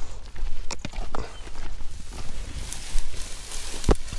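Footsteps on a gravelly dirt track with a few sharp crunches, then dry grass swishing against the walker and the camera, over a steady low rumble. A heavier thump comes just before the end.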